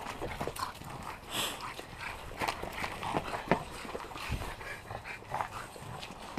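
Two French bulldogs and a person running across wood mulch and brick pavers: irregular footfalls and scuffs, with dog noises mixed in.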